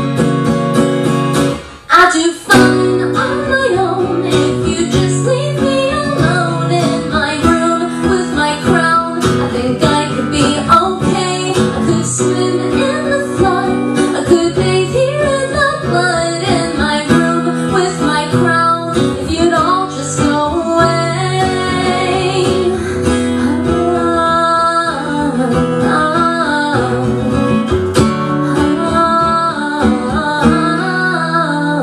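A woman singing over a strummed acoustic guitar in a live performance. The music briefly drops away just before two seconds in, then comes back with a hard strum.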